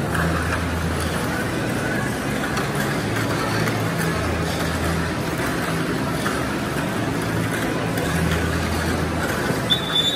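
Murmur of a crowd echoing in a large indoor hall, with a steady hum underneath and a short high beep near the end.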